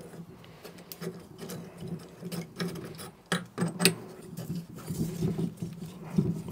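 Metal burner tube being worked into the tight-fitting burner port of a stainless steel propane melting furnace: scattered clicks, scrapes and small knocks of metal on metal, with a few sharper knocks in the middle.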